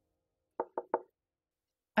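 Three quick knocks on a door, about a second in.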